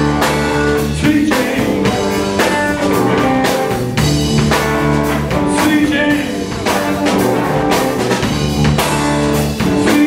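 Live blues band playing: hollow-body electric guitar, electric bass and a drum kit keeping a steady beat of about two hits a second.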